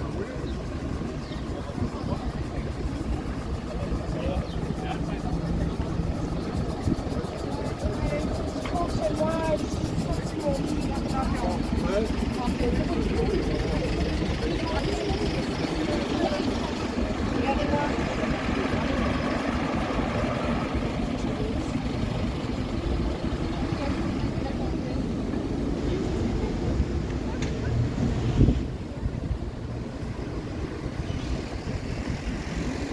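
City street ambience: a steady low rumble of traffic and idling vehicles, with a low engine hum for the first few seconds. Voices of passers-by talking come through in the middle.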